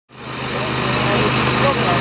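Small petrol engine of a hydraulic rescue-tool power unit running steadily, fading in at the start, with voices talking over it.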